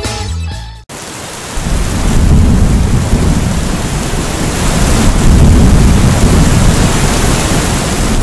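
Thunderstorm sound effect: a steady hiss of heavy rain under a deep rolling rumble of thunder, swelling about a second and a half in and staying loud. A music track cuts off abruptly just before the storm begins.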